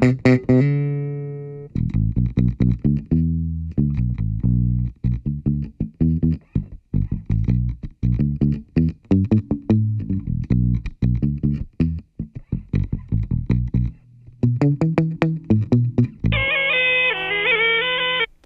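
Electric bass guitar played through a Gallien-Krueger Fusion bass amp with a tube preamp: a long note rings out, then a run of quick plucked notes with short gaps. Near the end a short jingle takes over.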